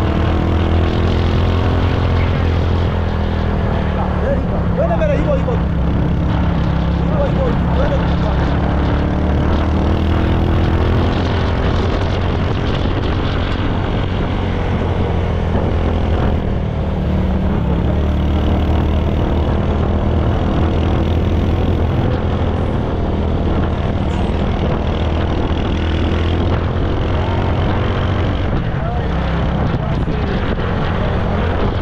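Motorcycle engine running under way as the bike rides along, a steady low rumble whose note shifts slightly as it speeds up and slows, with wind and road noise.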